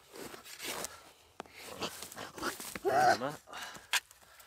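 Spade digging into crumbly soil and grass sod, several short crunching and scraping strokes with a sharp click about a second and a half in. A brief voice comes in about three seconds in.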